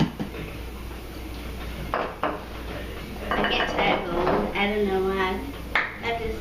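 A spoon clinking against small ceramic bowls as filling is scooped into a bowl: a sharp clink at the start and two more close together about two seconds in.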